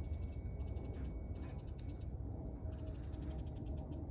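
Quiet outdoor background: a steady low rumble with faint, rapid high-pitched ticking in two short runs, one near the start and one about three seconds in.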